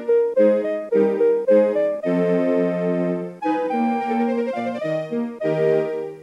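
Electronic melody from an EMPEX Super EX melody weather clock (EX-5478), its Seiko NPC SM1350AAQM melody IC playing the tune set for the 'sunny' forecast through a small TOA BS-4W speaker. It is a polyphonic, keyboard-like tune of short and held notes and chords, and its last chord fades out at the very end.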